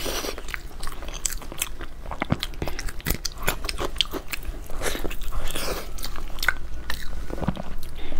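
Close-miked eating sounds: a person chewing and biting a sauce-coated, meat-stuffed fried food, with many short wet crackles and smacks.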